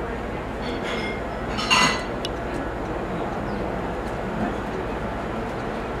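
Glass or crockery clinking once, loud and short with a brief ring, just under two seconds in, with a fainter clink about a second in, over a steady background murmur.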